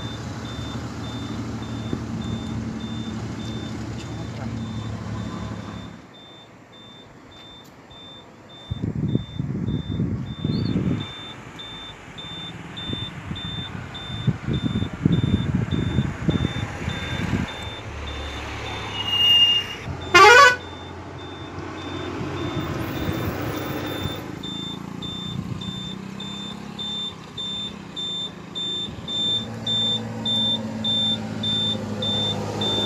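Raw roadside sound around vehicles: a low engine hum at first, then people's voices in short bursts, with a faint electronic beep repeating evenly throughout. About two-thirds of the way through comes one loud, short sound that falls sharply in pitch.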